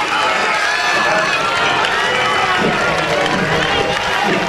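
Crowd of spectators shouting and cheering, many voices overlapping in a steady loud din.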